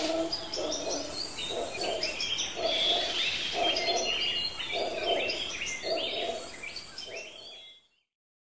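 Several small birds chirping and calling over one another in quick, overlapping phrases. A lower hooting note repeats steadily about once a second underneath.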